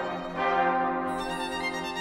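Orchestral brass section of trumpets, trombones and tuba enters just after the start with a loud held chord. It swells and then tapers off, with the solo violin sounding alongside.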